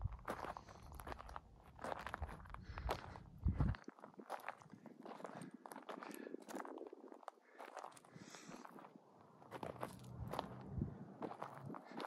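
Footsteps crunching on loose gravel and dirt, faint and uneven, with a brief lull a little past the middle.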